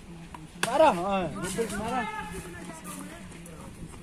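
Young men's voices shouting calls during a game of cricket, starting sharply about half a second in and trailing off after a couple of seconds, over a steady low hum.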